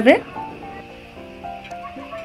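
Soft background music of held notes that step to a new pitch every half second or so, over a faint sizzle of fish chops deep-frying in hot oil.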